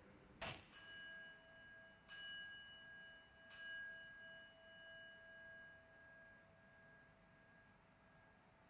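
Altar bell struck three times, about a second and a half apart, each ring fading away slowly: the signal for the elevation of the consecrated host. A short knock comes just before the first ring.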